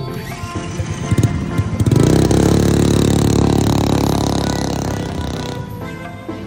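A small mini-bike motorcycle engine gets loud about two seconds in, holds, then fades away over a few seconds, over background music.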